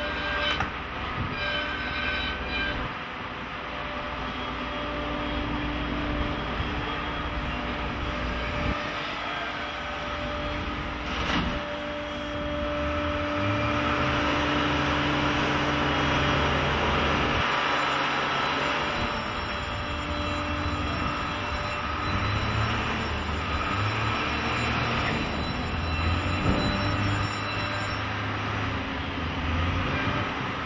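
Electric-drive Sennebogen 870 crawler material handler working its clamshell grab: a steady machine hum with whining tones from its drive and hydraulics, shifting in pitch as it moves, and one sharp knock about eleven seconds in.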